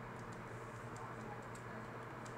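Faint computer keyboard keystrokes, a scattering of light clicks as text is typed, over a steady low background hum.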